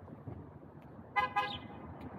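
A vehicle horn gives a short toot about a second in, over low city street noise.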